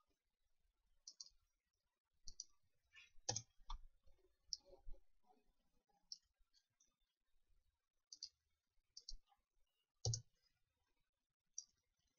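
Faint computer mouse button clicks, a dozen or so at irregular intervals, with a couple of slightly louder taps among them, against near silence.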